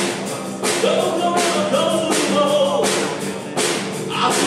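A live band playing a rock song: singing over acoustic guitar, electric bass and cajon, with a steady beat struck about every 0.7 seconds.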